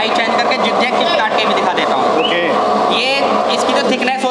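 Electric potato chip slicing machine running with a steady motor hum, under people's voices talking.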